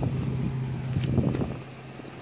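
Steady low hum of an idling car engine, with a few faint clicks about a second in.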